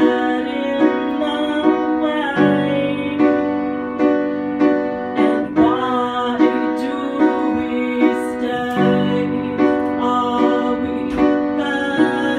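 Piano played live in a steady rhythm, with chords struck about every second, and a woman singing over it.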